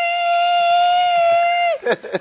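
A person's voice imitating a car's awful noise with one long, high-pitched squeal, held steady and dropping off just before the end.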